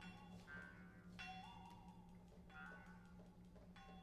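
Quiet contemporary chamber music for voice, harp and percussion: soft struck metallic notes, about one every second and a third, each ringing out and fading, over a faint held wavering tone.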